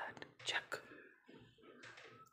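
Low voices and whispering in a small room, with a few sharp hissy sounds near the start and about half a second in.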